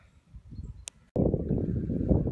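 Quiet outdoor field ambience with a single soft click, then, about a second in, a sudden loud low rumbling on the microphone, the kind of noise that wind or handling makes on an outdoor camera.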